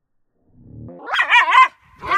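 German hunting terrier (Jagdterrier) growling during tug-of-war play: a low growl starts about half a second in and turns, about a second in, into loud, high-pitched wavering growl-barks that rise and fall in pitch.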